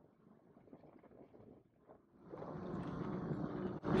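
Near silence for about two seconds, then a steady rush of wind noise on the microphone while riding a bike along a paved path, cut off briefly just before the end.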